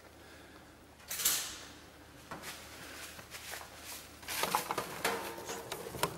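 A short metallic scrape about a second in, followed by scattered light knocks and clatter, as a meat-slicer machine is moved off a stainless steel table.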